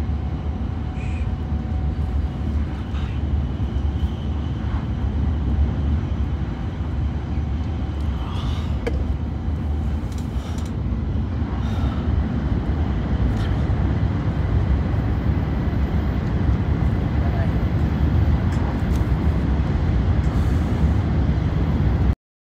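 Steady low rumble of a Shinkansen bullet train running at speed, heard inside the passenger cabin. It grows slightly louder in the second half, once the train is in a tunnel.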